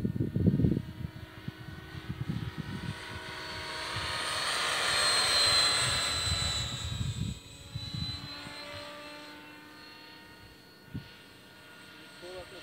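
Electric RC helicopter (Outrage Fusion 50 on a Scorpion 4025-630kv motor, head speed governed at 1953 rpm) flying: a steady motor-and-gear whine with rotor blade noise that swells as it passes closest about five seconds in, then fades as it flies off.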